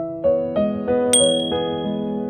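A single bright bell ding about a second in, a notification-bell sound effect that rings briefly and fades, over soft background piano music.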